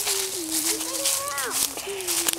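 Footsteps crunching through dry leaf litter, with a person's voice holding a wavering, hum-like note that sweeps sharply up and back down a little past halfway.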